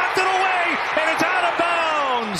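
Television play-by-play announcer calling the play in a raised, excited voice, his pitch falling away near the end.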